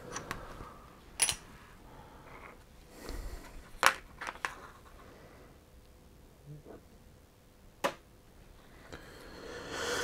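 Quiet handling at a hobby bench: a fine metal tool and a small plastic miniature on its holder give a few sharp light clicks, about four spread through, with soft scraping and shuffling between them.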